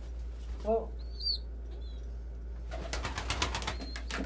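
A young squeaker pigeon giving a few thin, high peeps, then near the end a second-long flurry of pigeon wings flapping.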